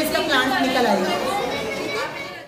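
Chatter of many young children talking over one another.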